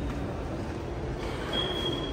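Steady background noise of a large indoor public hall, a dense low rumble and hum, with a brief thin high-pitched squeal lasting about half a second near the end.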